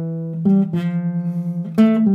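Nylon-string classical guitar playing single notes of a slow C major scale exercise: a short pickup note from the step above, then a held target note. The held note buzzes badly, with a fast pulsing wobble.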